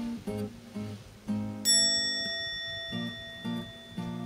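Background music: acoustic guitar picking single notes. About halfway through, a high bell-like ring sounds suddenly and fades slowly.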